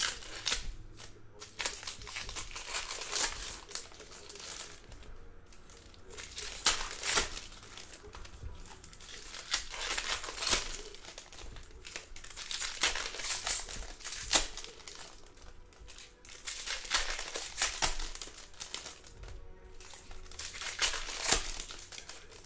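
Foil wrappers of Topps Chrome baseball card packs being torn open and crinkled by hand. The crackling comes in irregular bursts, with louder clusters every few seconds.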